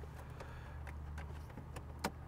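A few faint clicks from a 2004 BMW 745i's dash controls over a steady low hum, with no engine cranking: the car is dead and does nothing when tried.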